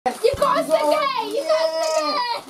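Voices talking, a child's voice among them.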